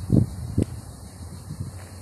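Two low thumps on the phone's microphone, about half a second apart, the kind made by wind gusts or handling. Faint steady outdoor background noise follows.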